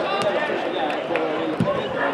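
Indistinct voices of football players and spectators calling and talking, with a couple of short knocks of the ball being kicked on the pitch.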